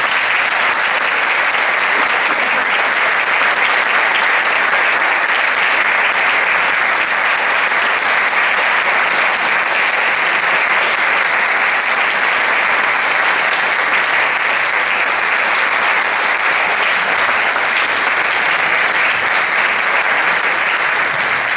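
Concert audience applauding steadily at the end of an orchestral performance, one sustained round of clapping with no let-up.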